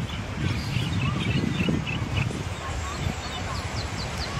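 Busy beach ambience: a steady rush of wind and surf noise with faint voices of people and children, and a run of short high chirps near the end.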